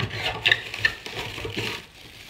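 Small cardboard puzzle box being slid open by hand: cardboard rubbing and scraping, with a couple of sharp ticks about halfway through. Near the end the plastic bag inside rustles as it is pulled out.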